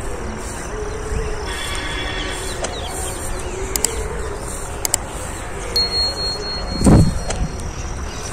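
Outdoor field ambience, mostly a steady low rumble of wind on the phone's microphone, with a couple of sharp clicks and a thin high whistle in the second half. A loud thump of handling noise comes about seven seconds in as the phone is moved through the plants.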